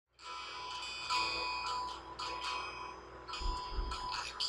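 Chimes ringing: clear tones that hang on, struck again at uneven moments. A low rumble joins them about three and a half seconds in.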